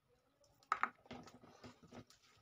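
Close-up eating sounds of a mouthful of chicken pulao taken by hand: two sharp wet smacks about three quarters of a second in, then a run of softer clicks as the rice is chewed.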